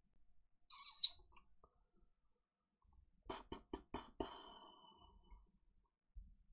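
A short hiss about a second in, then about five quick sharp clicks in a row around the middle. The last click leaves a brief high ringing tone that fades away.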